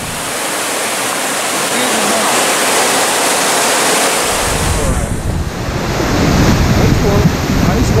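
Loud, steady rush of fast, turbulent creek water in the tailwater below a dam, with a deeper rumble joining about halfway through, like wind on the microphone.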